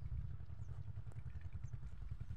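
Light breeze buffeting the microphone: a steady, fluttering low rumble, with a few faint high chirps.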